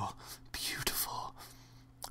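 A man whispering faintly, a breathy unvoiced sound from about half a second in, over a steady low hum.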